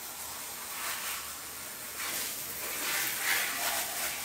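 A steady, faint hiss of background noise with no speech in it. It grows slightly louder about three seconds in.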